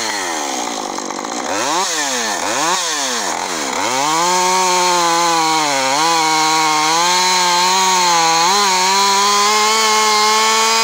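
Husqvarna 550 Mark II two-stroke chainsaw revved up and down several times in quick succession, then held at full throttle cutting steadily into a black locust log with its 18-inch bar and full-chisel chain, the pitch dipping briefly twice as it loads down in the cut.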